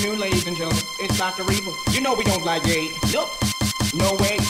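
Pumping/vixa electronic dance music with a fast, steady kick-drum beat and a pitched vocal line over it.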